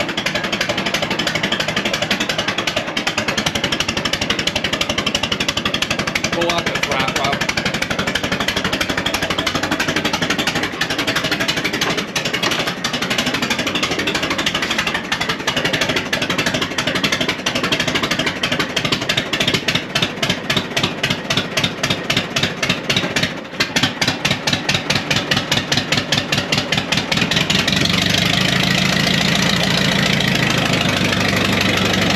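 1936 Allis-Chalmers UC tractor's four-cylinder engine running just after a hand-crank cold start, with a heavy exhaust leak. Its running turns uneven and pulsing in the second half, then settles into a steadier, deeper run near the end.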